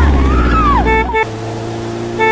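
Wailing, gliding voices over a deep rumble, cut off about a second in by a steady engine-like drone. Short beeps in pairs, like a scooter horn tooting, sound over both.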